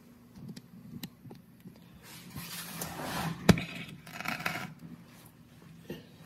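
Handling noise from tools and bolt hardware being picked up and moved: scraping and rustling with a few light ticks, and one sharp click about three and a half seconds in.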